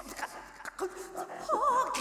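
Extended-technique vocal improvisation in a woman's voice: scattered clicks and short broken vocal fragments, then a wavering, warbling high note starting about one and a half seconds in.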